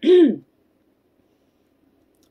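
A woman clears her throat in a short voiced rasp that ends about half a second in.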